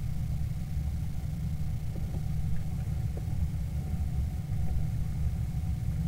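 A steady low background rumble, even in level, with a faint steady whine above it.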